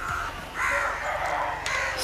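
A bird giving harsh, hoarse calls: a short one at the start and a longer one about half a second in.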